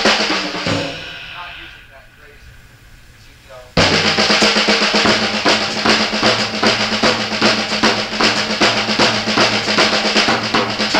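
Drum kit played in a dense run of snare and cymbal strokes as a lesson demonstration of metric modulation. About a second in the playing stops and dies away, then it comes back in suddenly near four seconds and runs on.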